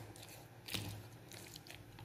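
Spoon stirring raw liver strips with garlic and salt in a plastic bowl: faint wet squelching, with one sharper click a little under a second in.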